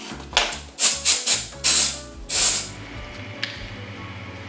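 Background music, with a quick run of about six short, sharp hissing bursts in the first three seconds, then a single click.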